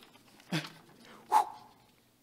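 A man laughing: two short bursts of laughter, about a second apart.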